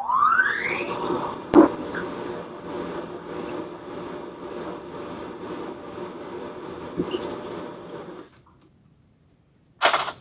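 Bridgeport-style vertical milling machine's spindle motor starting with a rising whine, then running steadily while a twist drill cuts into aluminium lubricated with WD-40, with a high squeal pulsing about twice a second. The spindle stops about eight seconds in, and a sharp click follows near the end.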